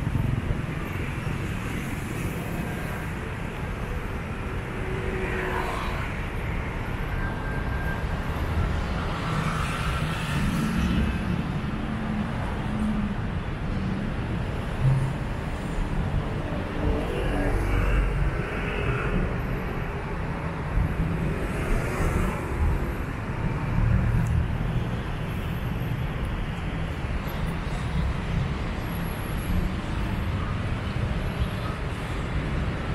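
Steady city road traffic noise with a low, rumbling undertone. A few faint, brief higher sounds rise over it now and then.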